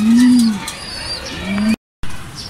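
Domestic racing pigeons cooing: low, rising-and-falling coos of about half a second each, repeating about every second and a half, with faint high chirps of other birds above. The third coo is cut off abruptly near the end.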